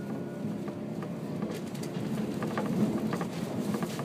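Interior running noise of a JR 185-series electric train at speed: a steady rumble of wheels on rail, with scattered light clicks from the track in the second half.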